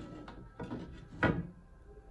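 A few short knocks and bumps on wood, the loudest about a second and a quarter in, from the painter handling things at the wooden easel.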